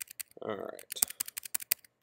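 Computer keyboard keys clicking in a quick, uneven run of taps, about a dozen in two seconds. A short spoken "All right" comes in between the taps.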